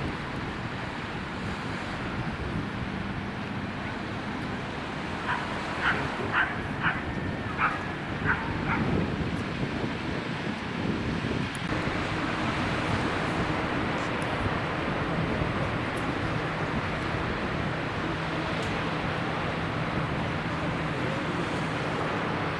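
Open-air wind and a steady rush of distant surf and town noise. A dog barks about six times in quick succession around six to eight seconds in. From about halfway through, a steady low engine hum joins in.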